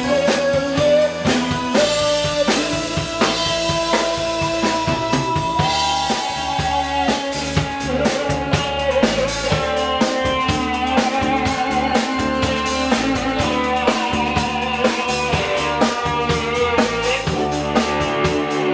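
Live band playing an instrumental passage: a drum kit keeping a steady beat under electric bass and keyboards, with a lead melody of long held notes.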